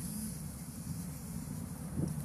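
Steady low rumble of outdoor background noise, with no distinct events.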